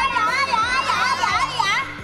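Several children crying out together in high, wavering, drawn-out voices, over background music.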